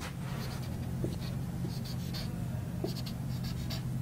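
Whiteboard marker squeaking and scratching in short, irregular strokes as letters are written on the board, over a steady low hum.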